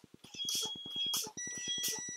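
Air-brake truck with its brake pedal being pumped: short hisses of air about every two-thirds of a second over a diesel engine idling. Partway through, the low-air-pressure warning buzzer comes on with a steady high tone and keeps sounding, the sign that system air pressure has fallen to the warning threshold (60 psi or above).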